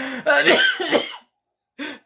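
A man's loud, hoarse laugh that breaks off about a second in.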